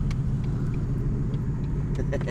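Ford Mustang 5.0 V8 driving, its engine and road noise heard from inside the cabin as a steady low rumble.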